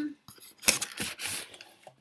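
Cardboard mailer box being pulled open: the lid and its tucked-in flap scraping and rustling against the box, with one sharp snap a little under a second in.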